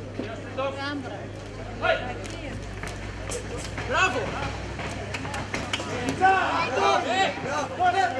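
Voices shouting short calls from around a fight ring, growing busier in the second half, with several sharp slaps and a steady low hum underneath.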